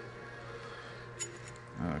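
Quiet workshop room tone with a low steady hum and one faint click about a second in, from a steel roller cam follower being handled in its bore in a Caterpillar 3406 diesel block.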